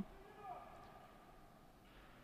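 Near silence in a pause of the commentary, with only a faint, brief sound about half a second in.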